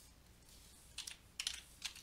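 A few light clicks in the second half, about four in all, over faint room hiss: clicks at the computer while the scribbled working is cleared from the screen.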